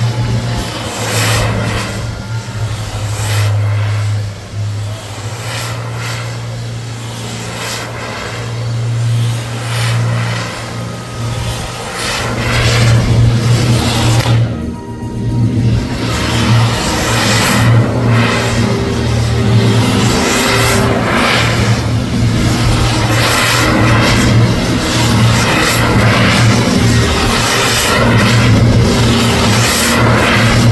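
Firework fountains on a metal display frame hissing and crackling as they spray sparks, the rushing noise growing louder about halfway through, with music playing underneath.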